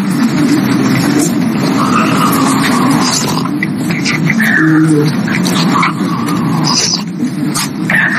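Steady babble of many overlapping voices: a room full of students chatting among themselves while they work on a set question.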